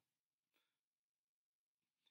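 Near silence: a pause between spoken sentences.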